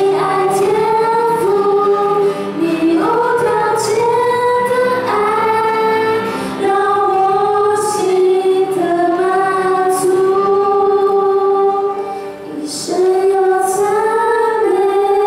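Two female voices singing a Mandarin Christian worship song through microphones, with upright piano accompaniment and long held notes.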